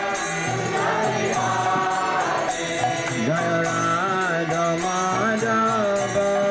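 Kirtan: a male voice leads a devotional chant over a sustained harmonium, with percussion keeping a steady, even beat.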